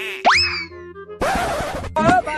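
Cartoon 'boing' sound effect over light background music: a sharp upward glide about a quarter second in that falls away slowly, followed by a burst of hissing noise from just past the middle to near the end.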